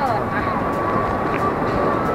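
Steady hubbub of a busy airport check-in hall: crowd voices mixed with the rumble of stroller and suitcase wheels rolling on the floor, with a faint steady tone throughout and a voice briefly at the start.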